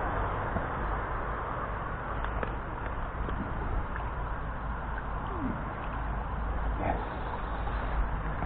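Steady rush of a shallow chalk stream flowing over riffles, with a couple of faint, brief sounds falling in pitch about five and a half and seven seconds in.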